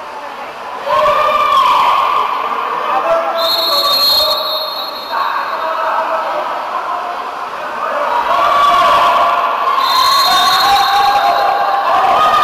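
Shouted voices at a water polo game, loud from about a second in, with two short whistle blasts from a referee's whistle, one about three and a half seconds in and one about ten seconds in.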